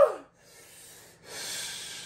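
A voiced "ooh" trails off, then after a second comes a long, loud, airy breath through the mouth: a person huffing air against the burn of an extremely hot chip.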